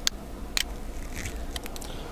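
A handful of sharp computer mouse clicks at irregular intervals, several bunched together in the second half, over a low steady hum.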